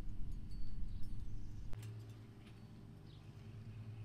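A small hand garden tool digging and scraping in rocky soil at the base of a fence to pull out a young rose, with the low rumble of the phone being handled. A single sharp click comes a little under two seconds in, then a steady low hum.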